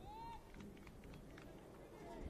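Faint open-air ambience of a football ground, with one short distant call in the first half-second that rises and then levels off.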